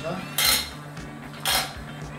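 Stainless steel strainer and cookware knocking together: two sharp metallic clanks about a second apart, each ringing briefly.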